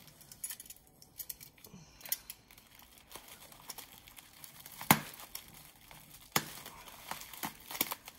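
Plastic packing wrap crinkling as it is handled and cut with a small utility knife, with scattered light clicks and two sharper clicks, about five and six and a half seconds in.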